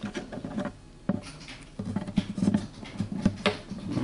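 Handling noise as fingers fit a thin shim and the saddle into a guitar bridge's saddle slot: irregular small clicks, taps and rubbing, with sharper clicks about a second in and near the end.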